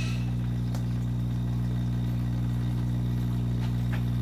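A steady low hum at one unchanging pitch, with a few even overtones, running without change.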